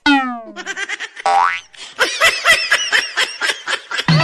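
Cartoon comedy sound effects: a descending whistle glide at the start and a rising slide-whistle glide about a second and a half in. These are followed by a fast run of wavering, high-pitched warbling tones for the last two seconds.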